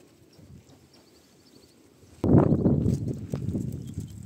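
Sheep and goats of a flock close by: a quiet first half, then a sudden loud, rough burst of animal sound about halfway through that fades over the next second.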